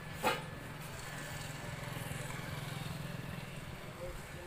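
A small engine running steadily with a low pulsing hum, growing a little louder in the middle, with one sharp knock shortly after the start.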